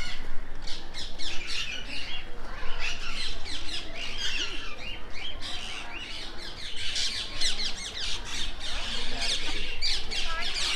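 A flock of small parrots in an aviary squawking and chattering, many short high calls overlapping without a break and growing denser toward the end.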